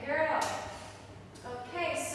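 Speech: voices speaking in short phrases.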